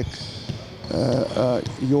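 Basketballs being dribbled on an indoor court floor in the background, a few faint knocks under a man's speech.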